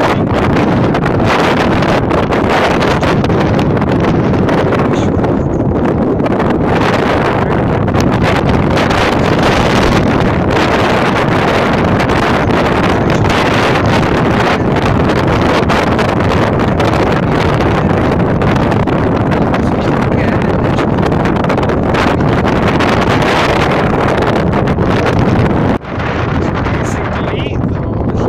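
Wind blowing hard across a phone's microphone on an exposed hilltop: a loud, steady rushing noise without let-up.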